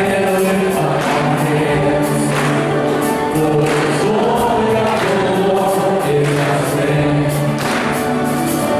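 Live praise and worship song: a band of electric guitars, bass and acoustic guitar playing, with lead singers and a choir singing over a steady beat.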